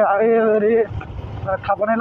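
A voice talking over the low steady rumble of a motorbike in motion, with wind on the microphone; the talking pauses briefly around the middle.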